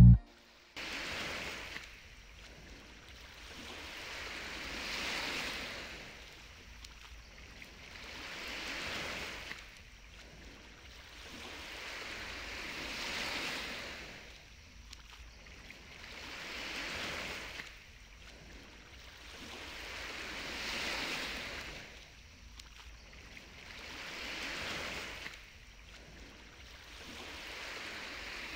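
Waves washing onto a shore: a soft hiss that swells and falls away about every four seconds.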